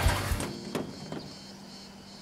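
Background music fading out in the first half second, then two short clicks of a pickup truck's door latches as its doors are opened.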